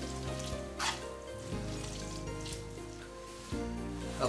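Spaghetti sizzling faintly in hot olive-oil and garlic sauce in a nonstick pan as it is stirred and tossed with a wooden spoon, with a couple of brief louder swells. Background music plays underneath.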